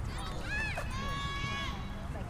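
A high-pitched shout across the field: a short rising-and-falling call, then one long held call about a second in, over a steady low outdoor rumble.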